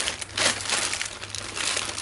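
Clear plastic zip-lock bag of bandages crinkling as it is handled and lifted, with its loudest rustle about half a second in.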